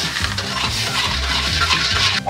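Metal wok ladle scraping and stirring around a steel wok, dissolving sugar in water at the start of a sugar syrup.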